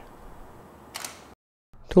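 Faint room tone with one short click about a second in, then a moment of dead silence from an edit cut.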